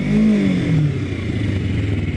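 Kawasaki Ninja 250R parallel-twin engine on its stock exhaust, its revs swelling briefly and then dropping, then running on at low revs with an even pulse. Wind hiss runs underneath.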